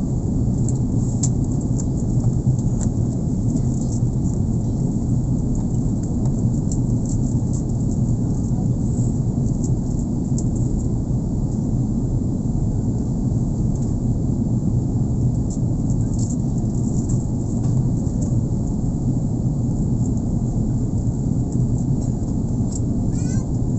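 Steady airliner cabin noise on the approach: a low, even rumble of jet engines and airflow inside the cabin.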